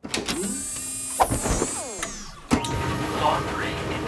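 Cartoon sound effects of a washing machine loading itself and starting a wash: swooping, gliding effects, a single clunk about two and a half seconds in, then the drum running.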